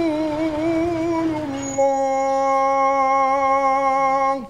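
A woman's singing voice wavers through a melodic line, then holds one long steady note from about two seconds in.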